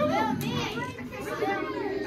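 A group of children cheering, many excited high voices overlapping at once, with a fresh swell about a second and a half in.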